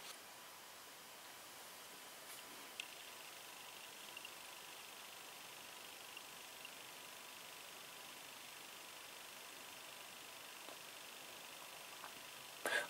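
Near silence: faint steady room hiss, with one small click a little under three seconds in.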